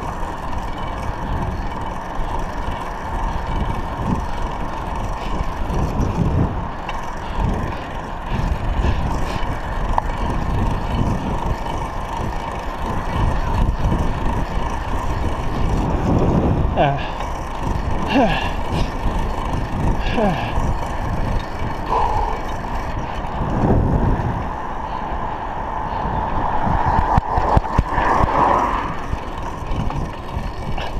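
Wind rumbling on a bicycle-mounted GoPro's microphone while riding along a road. Brief voices of people by the road come through about halfway and again near the end.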